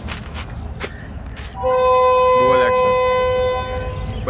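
Diesel locomotive horn of a Pakistan Railways HGMU-30 sounding one steady blast of about two seconds, starting about a second and a half in. A voice rises briefly over the horn partway through.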